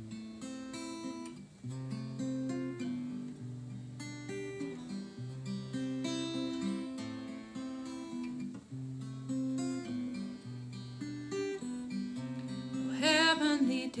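Acoustic guitar playing the chordal introduction of a folk song, a steady run of notes over a moving bass line. Near the end, a woman's voice comes in singing a long held note.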